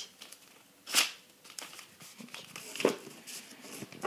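A sheet of paper being handled and folded, rustling in short bursts, loudest about a second in and again near three seconds, as a crease is pressed down with the fingers.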